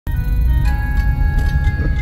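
Instrumental opening of a pop song's backing track: held electronic keyboard notes over a heavy low end, with new notes coming in under a second in.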